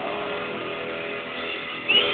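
Amplified electric guitars and PA in a quieter lull of a live heavy-metal set: held notes ringing on under a steady amplifier hum. A louder burst of playing cuts in just before the end.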